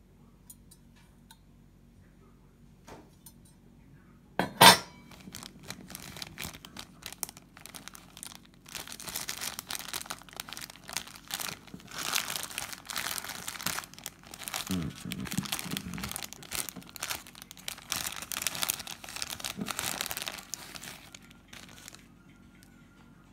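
Clear plastic packet of lantern mantles crinkling as it is handled and opened, with a long busy stretch of crinkling through the second half. One loud sharp sound about five seconds in.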